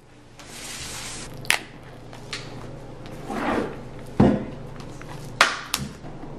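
A cardboard MacBook Pro retail box being handled on a wooden tabletop: a sliding rub early on, a few sharp taps, and a heavier knock about four seconds in.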